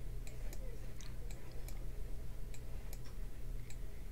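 Computer mouse button clicking unevenly, about nine short sharp clicks over a low steady hum.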